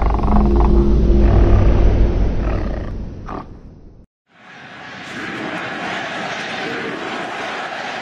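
Logo-intro sound effects. First a heavy low boom with a few held low tones, dying away over about four seconds. Then, after a moment of silence, a steady rushing noise swells in, holds, and fades out near the end.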